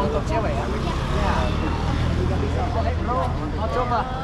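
People talking and laughing over busy street traffic, with a passing vehicle's engine humming low and steady through the middle.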